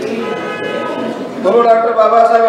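Men's voices calling out in long, held shouts, with a louder shout coming in about halfway through.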